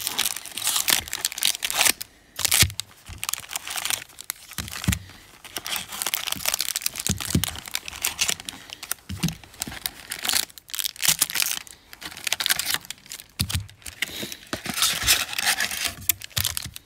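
Foil-wrapped baseball card packs crinkling and rustling as they are pulled one after another out of a cardboard hobby box and handled: a dense, irregular run of crackles.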